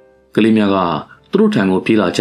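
A voice reading aloud in Burmese in two short phrases, with faint steady background music under the pauses.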